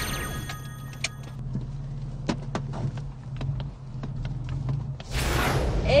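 BMW M4's twin-turbo straight-six idling, heard as a steady low hum inside the cabin, with scattered sharp clicks from seatbelts and trim. A short chime of sustained tones sounds in the first second, and a loud rushing noise comes about five seconds in.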